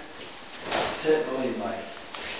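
A man's voice speaking a few indistinct words, starting about two-thirds of a second in, over the low sound of the room.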